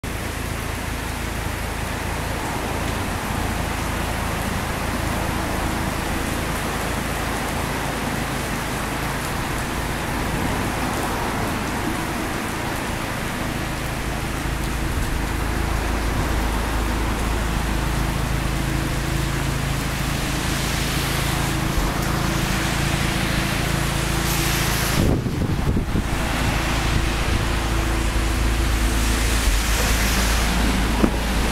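Mazda RX-8's two-rotor rotary engine idling through an aftermarket muffler: a steady low hum under a constant hiss. The hum grows stronger about halfway through, with a brief dropout near the end.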